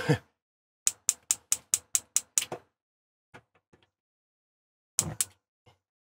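Burner igniter of a Suburban SDS2 gas cooktop clicking as a burner is lit: a quick, even run of about eight sparks, a few fainter ticks, then two more clicks near the end.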